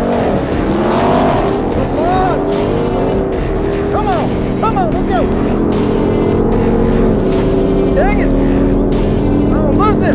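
Two vehicles launching and accelerating hard in a drag race, led by the supercharged Hellcat V8 of a Ram 1500 TRX pickup, its engine note climbing, over background music. The Porsche Cayenne Turbo Coupe beside it is barely heard.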